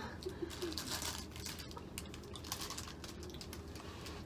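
Plastic candy packaging being handled: faint, irregular clicks and crackles, with a soft murmured voice in the first half second.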